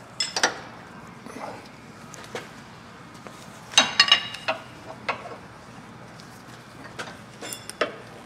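Wrench and metal parts clinking on a Jeep Gladiator's front sway bar link as its nut is fitted: a few short metallic clinks, the loudest about four seconds in with a brief ring, and two more near the end.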